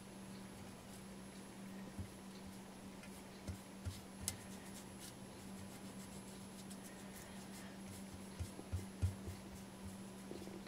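Faint, scattered small taps and light rubbing of a damp paper-towel wad wiping excess filler off a plaster cast, over a steady low hum.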